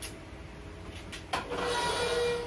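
The hinged lid of a Skutt 1027 electric kiln being lifted open. There is a click about a second and a half in, then a scraping sound with a faint steady squeal as the lid swings up.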